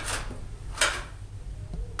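Plastic ribbon cartridge being slid into a Fargo DTC4000 card printer: a short plastic scrape at the start and a louder plastic knock a little under a second in.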